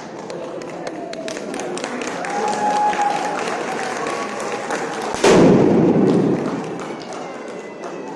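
A confetti cannon fires with a sudden loud bang and a rush of air about five seconds in, over the chatter of a crowd.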